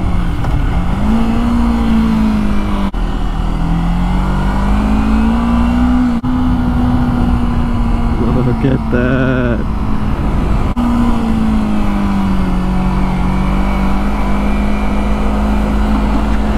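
Kawasaki Ninja 250R's parallel-twin engine running at a steady low cruising speed, its pitch rising and falling gently with the throttle, over a constant low wind rumble.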